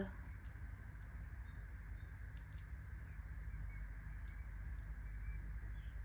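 Quiet steady low hum with a few faint, short high chirps and light clicks.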